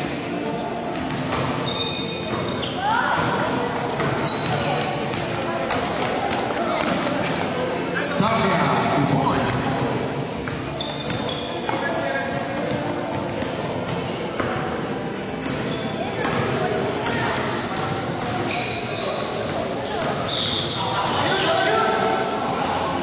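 Indoor basketball game sounds: the ball bouncing on the court amid continual voices of players and spectators.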